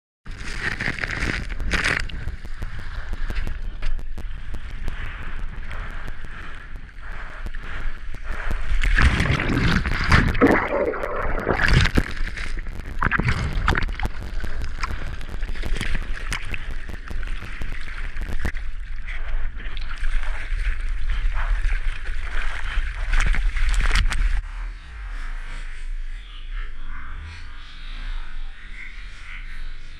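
Surf water rushing and splashing over an action camera mounted on a surfboard, with heavy buffeting on the microphone and many sharp splashes. The loudest churning comes around the middle as the board tumbles through a breaking wave. Music plays underneath, and the sound thins out about three seconds before the end.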